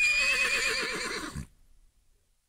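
A horse whinnying once: a high, wavering call that falls away and stops about a second and a half in.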